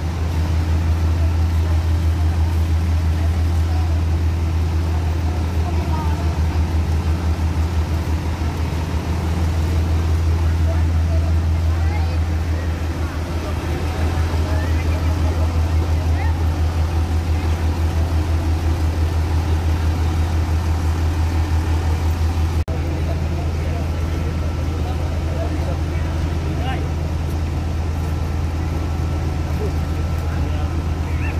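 Fire truck engine running with a steady low drone, its note changing suddenly about three-quarters of the way through.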